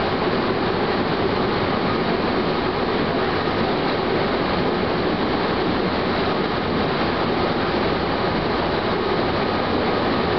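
Chichibu Railway electric train running along the main line, heard from the front of the cab: a steady rolling noise of wheels on rail that holds even throughout.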